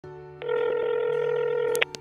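Phone call ringing tone: a steady buzzy tone that starts about half a second in and cuts off suddenly near the end, followed by a click as the call is answered.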